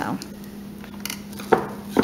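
Salad greens being grabbed from a plastic clamshell and stuffed into a glass mason jar: quiet rustling and handling over a steady low hum, with two short, sharp knocks near the end.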